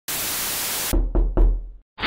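Logo-intro sound effect: a burst of static-like hiss lasting almost a second, then three deep knocks in quick succession that fade away.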